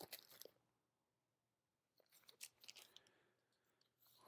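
Near silence, with a few faint rustles and clicks of vinyl records in plastic sleeves being handled, just after the start and again about two to three seconds in.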